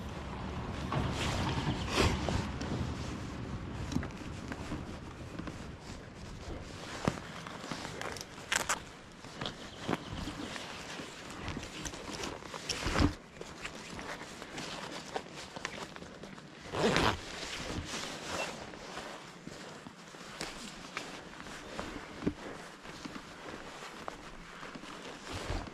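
Irregular rustling, soft knocks and clicks of a motorcyclist's riding jacket, gloves and gear being handled close to a helmet-mounted microphone, with a sharper knock about 13 seconds in and a short rustle around 17 seconds.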